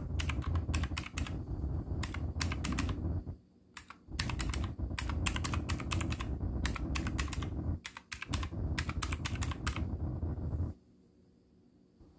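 Keys of a desk calculator with round typewriter-style keys being tapped in quick runs of clicks, in three spells broken by short pauses about three and a half and eight seconds in. The tapping stops about a second before the end.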